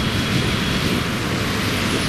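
Steady road traffic noise from a congested expressway: the low rumble of many idling and crawling cars, buses and trucks.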